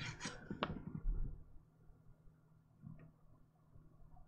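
Handling sounds of a crocheted wrap being picked up and moved: soft rustling and a few light knocks in the first second and a half, then one faint click about three seconds in.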